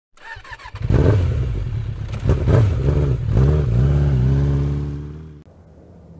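A motorcycle engine revs several times, rising and falling in pitch, then holds a steady note and fades out near the end.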